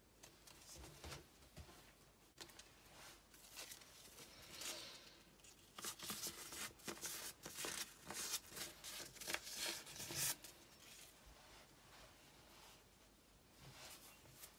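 Faint rustling and crinkling of old book paper being handled and pressed down by hand, busiest in the middle.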